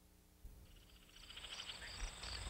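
A night-time chorus of calling insects and frogs fades in with a click about half a second in, chirping and trilling in quick even pulses over a steady high buzz, and grows louder.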